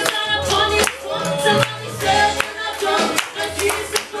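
Worship song with a group of voices singing over music with a bass line, and hands clapping along on the beat.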